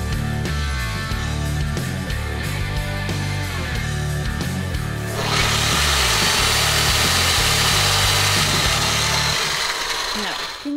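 Background music with a steady bass line; about five seconds in, a corded reciprocating saw starts running with a loud, steady buzz as it cuts down a wooden dowel. The music stops near the end while the saw keeps going.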